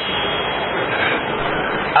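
A steady, even rushing noise, nearly as loud as the speech around it, with no words and no distinct events.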